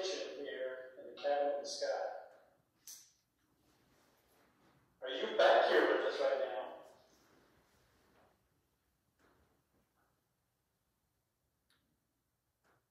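A person's voice in two short stretches, at the start and again about five seconds in, the words unclear. Then near silence with a few faint clicks.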